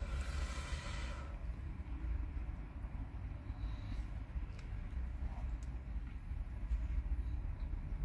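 Low, steady rumble inside a car's cabin, with a brief rustling hiss in the first second and a few faint clicks.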